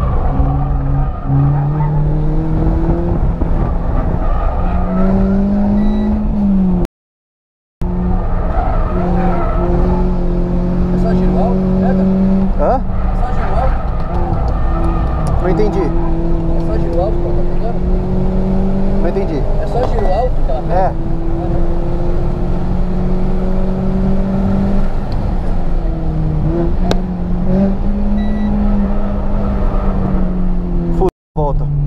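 Renault Sandero RS's 2.0-litre four-cylinder engine heard from inside the cabin under hard acceleration on track, its pitch climbing through the revs and dropping at each gear change. Brief wavering tyre squeals come through in the middle stretch, and the sound cuts out for about a second near the quarter mark.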